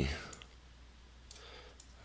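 A few faint, widely spaced clicks from the drawing input device as a dashed hidden line is drawn stroke by stroke, with a word of speech trailing off at the start.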